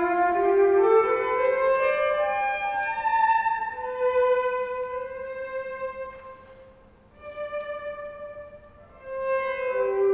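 Electric violin playing long held notes that step upward and overlap one another. The notes fade out about seven seconds in, and new held notes enter after the dip.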